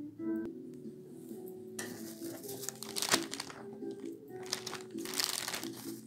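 Clear plastic bags crinkling and rustling in several bursts, starting about two seconds in, as vegetables are handled. Soft background music plays underneath.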